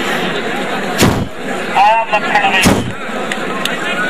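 Crowd of spectators chattering at an outdoor match. There are two heavy thumps, one about a second in and the other near three seconds in, and a short pitched call in between.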